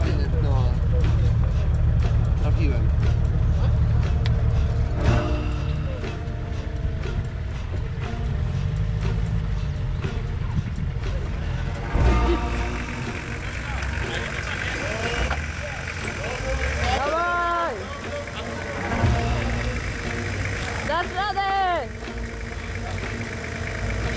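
Off-road 4x4 engines running at low revs, with indistinct voices calling out and background music.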